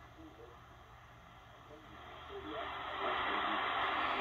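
Audio from a Malahit-clone DSP SDR shortwave receiver being tuned across the 49 m band: a faint, garbled voice from a weak station under noise, then rising static hiss from about two and a half seconds in. The receiver is overloaded by a strong nearby broadcast signal, which the owner blames for spurious signals across the band.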